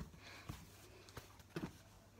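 Thick slime being pressed and spread by hand on a tabletop, faint, with a few short soft clicks at uneven intervals.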